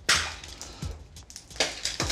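Plastic bag and small objects being handled, crinkling with scattered knocks; the loudest crackle comes just at the start and another about one and a half seconds in.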